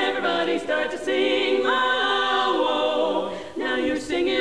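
Women's barbershop quartet singing a cappella in four-part close harmony, part of a swing-era medley. A chord is held through the middle, with a short break just before the end.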